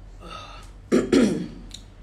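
A woman takes a breath, then clears her throat loudly about a second in.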